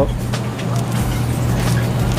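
Steady road traffic noise, a low rumble and hum with no single vehicle standing out.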